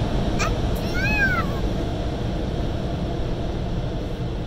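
Steady low rumble, with a short high squeal that rises and falls about a second in, just after a brief upward chirp.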